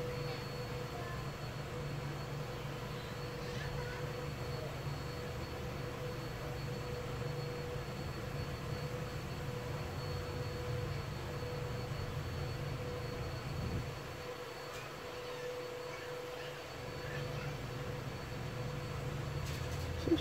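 Steady low room hum with a faint thin high whine, easing slightly for a few seconds about two-thirds through; the quiet crochet stitching makes no sound that stands out.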